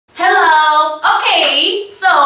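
A woman's voice calling out two loud, drawn-out phrases, an energetic greeting-like exclamation, the first ending about a second in.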